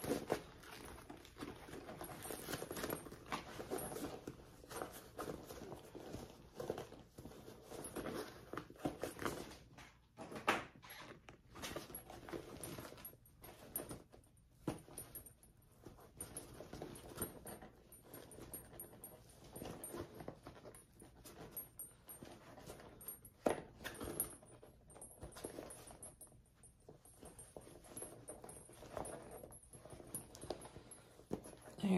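Luxe nylon bag fabric rustling and rubbing irregularly as hands work it, pushing out the corners of the turned bag, with a few sharper clicks from the handling.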